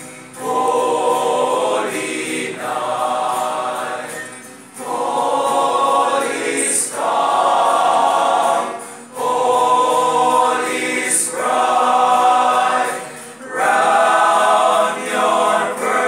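A choir of young men singing a Christmas carol together. They sing in phrases of about four seconds, with short breaks for breath between lines.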